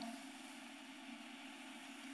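Faint steady background hum and hiss: studio room tone in a pause between sentences.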